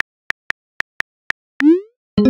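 Phone keyboard key clicks as a message is typed, about three a second, then near the end a short rising chirp as the message is sent.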